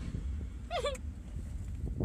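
A woman's short, wavering whimper about a second in, muffled by the gauze packed in her mouth, from pain just after a wisdom tooth extraction. Underneath runs the steady low rumble of a moving car's cabin.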